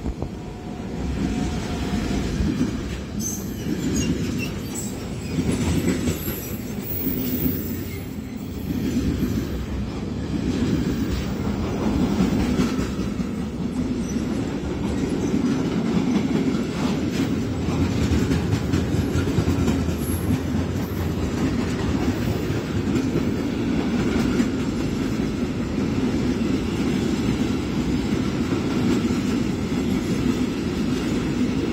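Freight train headed by a DB electric locomotive passing close by. After the locomotive has gone through in the first seconds, a long string of open freight wagons follows, with a loud steady rumble of wheels on rail and repeated clicks over the rail joints.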